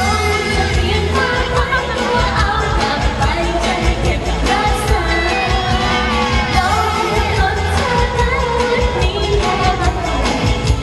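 A woman singing a pop song into a microphone over amplified backing music with a steady, pulsing bass.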